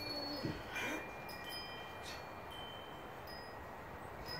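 Chimes ringing: several clear high tones at different pitches, sounding one after another and each held for a second or so, with two short knocks among them.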